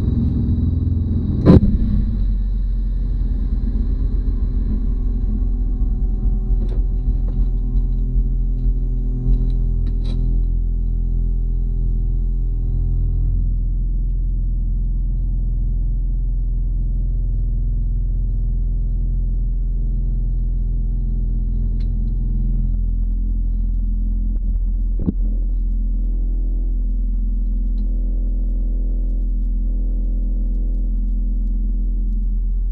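Outdoor unit of a Panasonic 2.5 kW mini-split heat pump running in heating mode with its heat exchanger frosting up in sub-zero air: a steady low hum with several steady tones, which shift slightly about three-quarters of the way through. A sharp knock about a second and a half in, and a small click later on.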